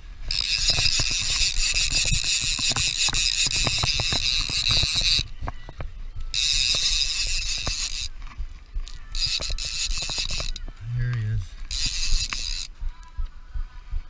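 Fishing reel's drag buzzing in four runs as a hooked salmon pulls line off: one of about five seconds, two shorter ones, and a brief one near the end. Light handling knocks come between the runs.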